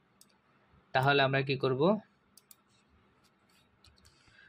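A few faint, sharp computer-mouse clicks, one near the start and a quick cluster between about two and three seconds in, as spreadsheet cells are selected and pasted.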